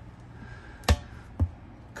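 A galley sink cover is lowered shut onto the countertop: one sharp knock about a second in, then a lighter knock half a second later.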